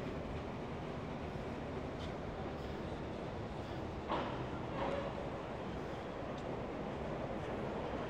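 Steady, even rumble of urban background noise, with a brief faint sound about four seconds in.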